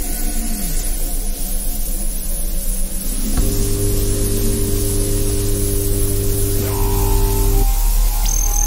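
Electronic music: a low rumbling drone, joined about three and a half seconds in by a loud sustained chord of steady synthesized tones. The chord cuts off abruptly shortly before the end.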